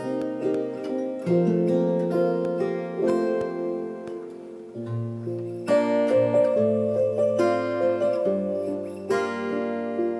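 Acoustic guitar and electronic keyboard playing a slow song together, plucked guitar notes over held keyboard chords that change every second or two.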